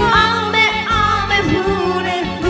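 Karaoke singing of an enka song: a sung vocal over the song's backing track.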